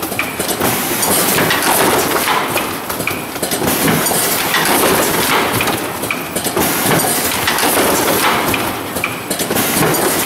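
Automatic case packer running: plastic gallon jugs clunking and rattling through the lanes and conveyor, with repeated knocks from the machine's mechanism in a steady clattering din.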